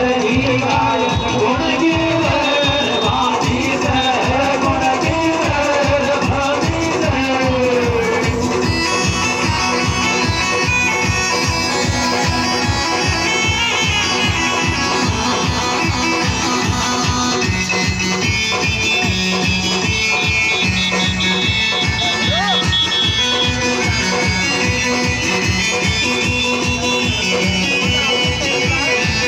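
Loud music with a steady, driving beat played through large stacked PA loudspeakers, with a wavering melody line over it in the first several seconds.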